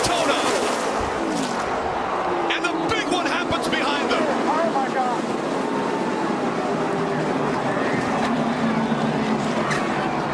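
NASCAR Sprint Cup V8 engines at racing speed, their pitch falling as the cars slow, mixed with a loud crowd roar. Several sharp crash impacts come in the first few seconds as cars wreck into each other and the outside wall.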